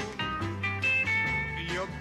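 A dance band plays a short instrumental fill between sung lines of a vaudeville-style pop song, with held high notes about a second in. The male singer comes back in near the end.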